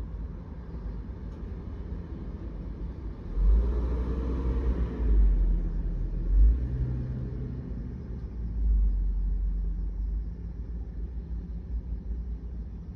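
Low vehicle rumble heard from inside a parked car. It swells louder from about three to seven seconds in, and again briefly around nine seconds.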